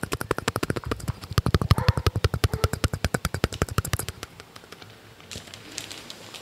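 Rapid, even ASMR tapping, about a dozen sharp taps a second, stopping about four seconds in.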